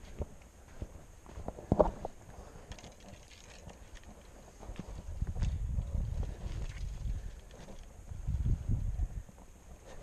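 Footsteps on dry sandy ground and brushing past dry scrub, irregular and uneven, with one sharp knock about two seconds in and heavier low rumbling thuds in the second half.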